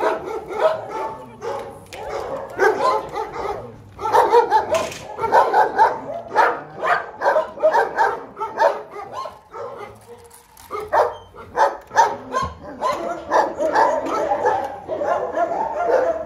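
Kennelled dogs barking, a near-continuous chorus of short barks that eases briefly about ten seconds in.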